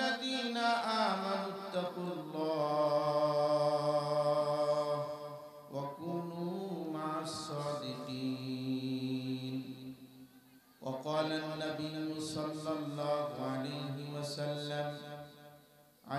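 A man's voice chanting Quranic recitation in slow, melodic Arabic through a microphone. It comes in three long phrases of drawn-out held notes, with short breaks for breath about six and eleven seconds in.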